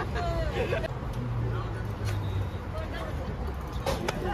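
Busy street ambience: passers-by talking in the first second, then the low, steady hum of a passing road vehicle, under a general murmur of traffic and people.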